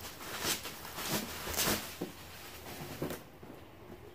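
Plastic bubble wrap rustling and crinkling as a boxed action-figure set is pulled out of it, in several short crackles, going quieter over the last second.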